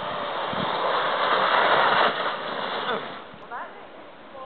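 Sled sliding down a snowy slope: a hiss of snow that swells to a peak about halfway through and fades as the ride stops. Brief voice sounds follow near the end.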